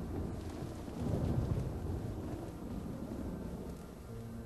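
A low rolling rumble over a steady noisy wash, swelling about a second in and slowly fading.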